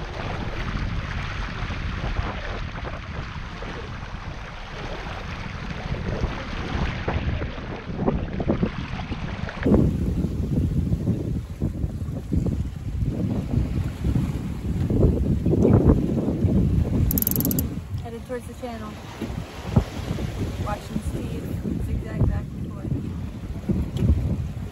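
Wind blowing across the microphone and water rushing along the hull of a small sailboat under sail in a strong breeze. From about ten seconds in, the wind buffeting turns heavier and lower, rising and falling in gusts.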